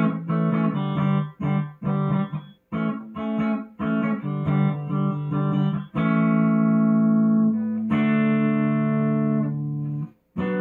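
Electric guitar strumming chords: short, clipped strums a few times a second for about six seconds, then two chords left to ring for about two seconds each.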